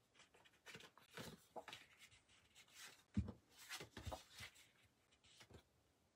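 Faint rustling and light taps of cardstock pieces being slid and set down on a desk, with a couple of soft thuds a few seconds in.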